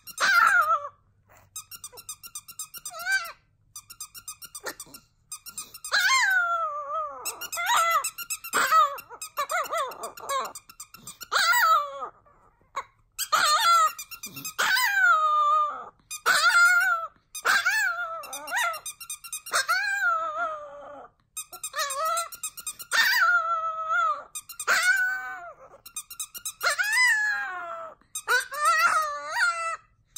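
Long-haired Chihuahua howling along with a squeaky toy: many short, high howls, each sliding down in pitch, among quick runs of squeaks from a plush squeaky toy being squeezed.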